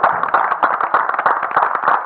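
Audience applauding: many hand claps blending into a dense, steady patter.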